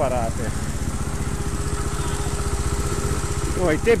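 Trials motorcycle engine idling steadily, its firing pulses running evenly with no revving.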